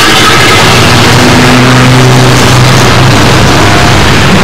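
A motor vehicle's engine running close by as it passes, with a low drone whose pitch shifts over a few seconds.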